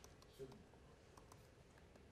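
Faint laptop keyboard typing: a few soft, scattered key clicks against near silence.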